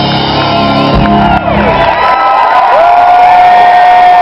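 Live rock band playing in a concert hall with the audience shouting and cheering. About halfway through the bass and drums drop out, leaving a single long held note over the crowd.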